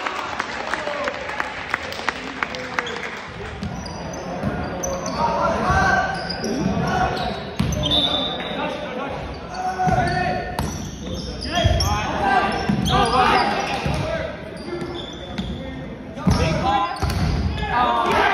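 Indoor volleyball game in a gymnasium: players' shouts and calls mixed with the thuds of the ball being struck and bouncing on the hardwood floor. A run of short, sharp clicks comes in the first few seconds.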